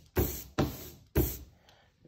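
Hand ink roller (brayer) being worked through printing ink on a glass slab: three quick strokes in the first half, each sharp at the start and fading out.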